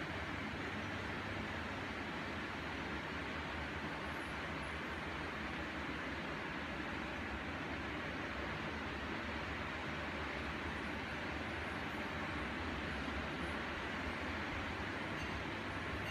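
Several electric household fans running together (an oscillating wall fan, a tower fan, a box fan and desk fans), making a steady, noisy rush of moving air over a low motor hum.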